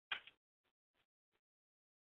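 Faint computer keyboard keystrokes: a sharper double click just after the start, then three soft taps spaced about a third of a second apart.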